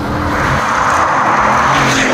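Bugatti Veyron 16.4 Grand Sport Vitesse's quad-turbocharged W16 engine running hard as the car drives towards and past, a rushing sound that swells to a peak about one and a half seconds in.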